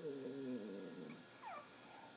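A low, drawn-out voiced sound lasting about a second, followed by a short squeak that falls in pitch.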